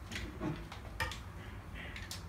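A few light clicks and rustles as hair is separated into a strand and the plastic Conair automatic curler is handled, most of them in the first second.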